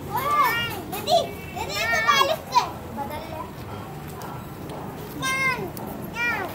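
A toddler's high-pitched squeals and babbling, in a few short cries with pauses between them.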